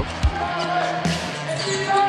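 A basketball bouncing on a hardwood court: two thumps in quick succession right at the start, over a steady background music bed.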